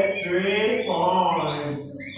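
A man's voice chanting a children's classroom song in drawn-out, sing-song notes.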